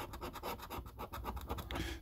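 A coin scraping the silver coating off a scratch card in quick, repeated strokes.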